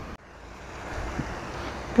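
Wind buffeting the microphone: a steady low rumble and hiss, swelling in after a brief drop-out at the start.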